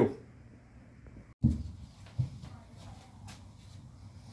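A couple of dull thumps, the first a little past a second in and a smaller one shortly after, then faint light clinks of dishes being handled at a kitchen sink over a low hum.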